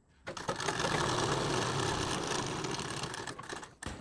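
Sewing machine stitching a seam through two layers of red fabric, starting about a quarter second in, running steadily, then slowing and stopping just before the end.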